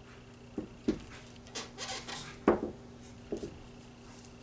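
A stretched canvas being shifted by hand on a tabletop: a few light knocks with a scraping rub in the middle, the loudest knock about two and a half seconds in.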